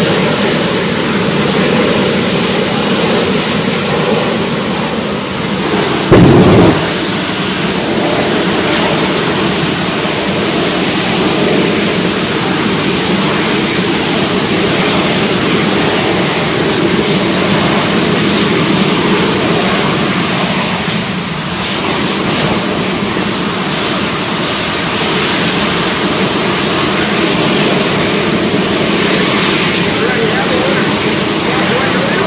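Jet drag cars' turbine engines running steadily and loudly, a continuous rushing noise with a steady high whine over it. About six seconds in there is a brief, louder burst.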